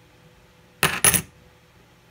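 A stack of 90% silver Washington quarters clinking against each other as it is set down on a table. There are two quick groups of metallic clinks about a second in, lasting about half a second.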